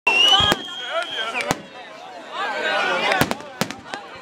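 Fireworks display: about half a dozen sharp bangs of shells bursting overhead, two close together in the first half second and three more near the end. A high whistle-like tone is held through the first second and glides down as it ends. People's voices talk and exclaim between the bangs.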